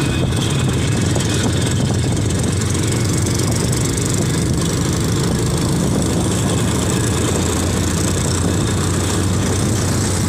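Motorcycle engine running steadily under way, a constant low drone with road noise.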